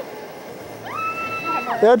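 Onlookers' voices: a long, level, high-pitched call about a second in, then a voice calling out "That's trouble!" near the end.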